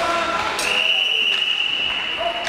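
Referee's whistle blown once in an ice rink: one long, steady, shrill blast starting about half a second in, stopping play during a scramble at the net.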